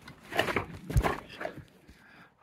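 Scuffs and knocks of someone clambering around a wrecked wooden staircase, with a heavy thump about a second in.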